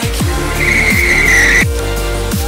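A single tire squeal of about a second from the black 2013 Scion FR-S turning in the parking lot, heard over loud dubstep-style electronic music with a heavy, repeating bass drop.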